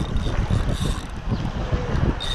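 Wind buffeting the microphone in uneven gusts, with surf washing in behind it.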